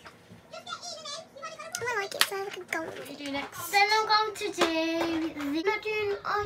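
A girl's voice singing without clear words, the pitch sliding and then holding one long note about five seconds in. A sharp click sounds about two seconds in.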